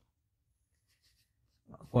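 Near silence with faint scratching, until a man's voice starts speaking near the end.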